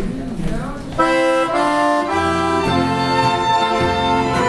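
An accordion ensemble starts playing about a second in, with held accordion chords. Low bass notes join a second later.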